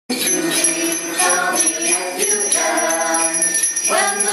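A small group of amateur carolers singing a Christmas song together, with a strap of sleigh bells jingling along in time.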